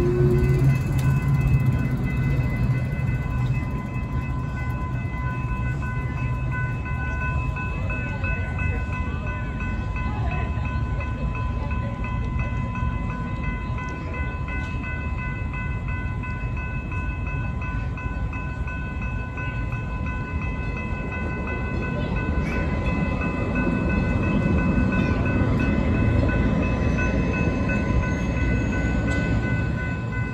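Railroad grade-crossing bell ringing steadily while the Redlands Arrow passenger train, a Stadler FLIRT diesel multiple unit, approaches. The train's rumble grows louder over the last several seconds.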